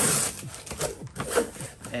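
Cardboard box being opened by hand: a loud scrape of cardboard right at the start, then scattered rustles and small knocks of handling.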